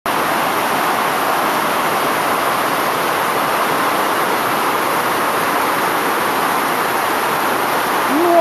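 Floodwater rushing fast down a paved street in a steady, loud torrent.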